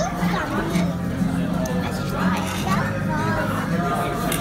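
Indistinct voices chattering over steady background music, in the ambience of a busy dining room.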